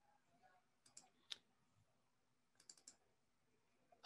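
Near silence broken by a few faint clicks from working a computer: a small cluster about a second in, the sharpest just after, and three quick clicks a little before three seconds.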